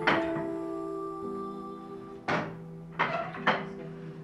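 Wooden knocks from a hand floor loom's beater and treadles, three of them close together in the second half, over soft background music with held string notes.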